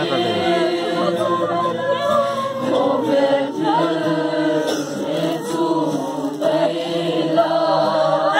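A group of people singing a hymn together, the voices holding long notes and sliding from one to the next.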